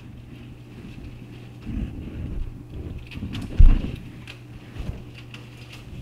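Lettuce leaves being cut and handled: small crisp snips and rustling, with one loud low thump about three and a half seconds in, over a steady low hum.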